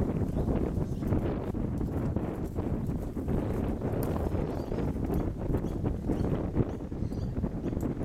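Horse hooves thudding on grass turf, under a steady low rumble of wind on the microphone.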